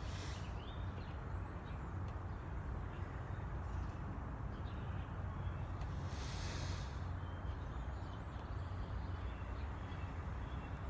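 Outdoor ambience: a steady low rumble, as of distant traffic, with faint bird chirps now and then. A brief breathy hiss comes about six seconds in.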